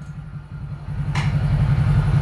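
A low, evenly pulsing mechanical rumble, growing louder from about halfway in, with a short hissing noise about a second in.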